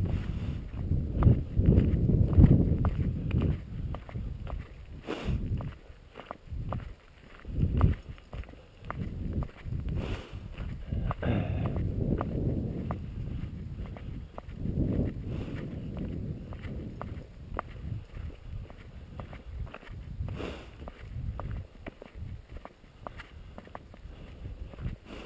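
Footsteps on a gravel road, a steady run of short clicks, under gusts of low wind rumble on the microphone that are strongest in the first few seconds and again around the middle.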